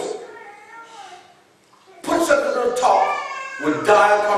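A man preaching in an emphatic voice. His words trail off into a pause of about a second and a half, and he speaks again about two seconds in.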